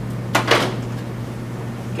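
One short click about a third of a second in, over a steady low hum in the room.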